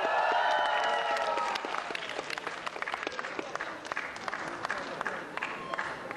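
Audience applause in a hall: many irregular hand claps that thin out and grow quieter, with a voice calling out over the start.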